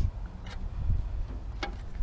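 Wind rumbling on an unshielded microphone, with two light clicks from handling, the first about half a second in and the second near the end.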